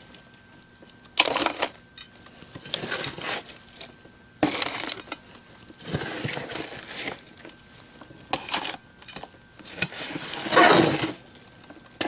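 A small hand scoop digging into pre-moistened potting mix and tipping it into square plastic pots: a string of about six short gritty scrapes and pours with quiet gaps between.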